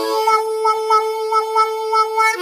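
Diatonic blues harmonica holding a single draw-2 note while cupped hands open and close over it: a hand wah that gives a rhythmic wah-wah pulse about four times a second on a steady pitch.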